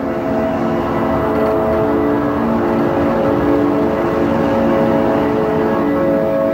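Outro music: a loud, sustained droning chord of several held notes over a low rumble, its notes changing slowly.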